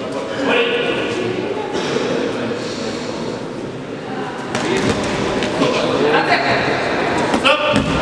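Thuds of a sanda bout, gloved strikes landing and, near the end, a fighter going down onto the mats, over voices and shouts in a large echoing hall.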